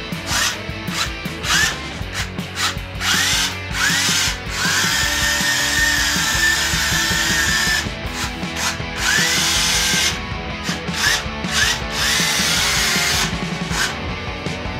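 Electric drive motors of a small tracked robot chassis whining in repeated short bursts, each rising in pitch as the motors spin up, with a longer steady run of about three seconds starting about four and a half seconds in. This is the robot being driven forward, back and turning by commands from a phone app.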